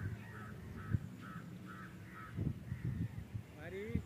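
A bird calling in a run of about six short, evenly spaced calls, about two a second, which stop about halfway through. Low thumps sound underneath.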